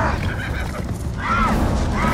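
Horses whinnying and galloping in a film-trailer chase mix: short rising-then-falling cries a little after a second in and again near the end, over a deep, steady rumble.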